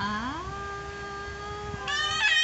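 A long held vocal 'aaah' that slides up in pitch at the start and then stays on one steady note. Just before the end a baby starts to cry over it.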